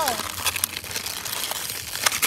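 Foil toy blind bag crinkling in many short, irregular crackles as hands twist and pull at it, trying to tear open a bag that is glued shut.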